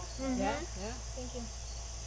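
Soft, brief voice sounds in the first second, quieter after, over a steady low background hum.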